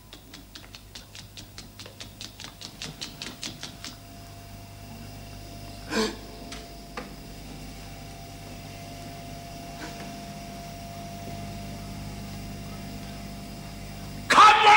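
Laboratory computer equipment sounding: rapid mechanical clicking, about six clicks a second, builds in loudness and stops after about four seconds. A steady electrical hum with a held high tone follows, broken by a sharp knock about six seconds in and fainter knocks later.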